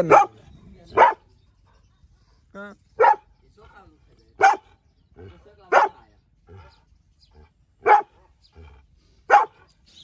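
A white dog barking in single sharp barks, about seven of them, one every one to two seconds with short pauses between.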